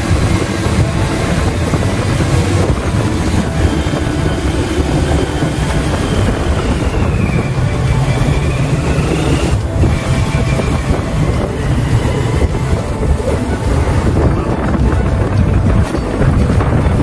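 Steady road and engine noise of a vehicle driving along a paved road, heard from on board, heaviest in the low end.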